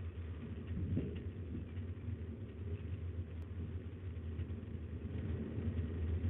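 Steady low rumble with a faint even hiss above it, with no clear bird calls.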